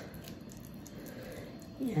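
Faint, soft squishing of a silicone spatula spreading thick, grainy cake batter in a baking pan.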